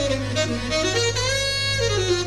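Jazz ensemble recording of a film theme: a wind instrument plays a melody line that steps down and back up through several held notes, over a steady low tone.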